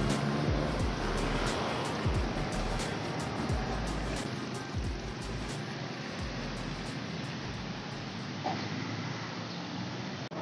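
City street traffic, with motorcycles and motor tricycles going by, under background music.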